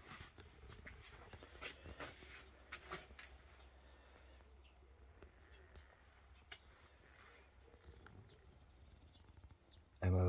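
Near silence: room tone with a low steady hum and a few faint scattered clicks.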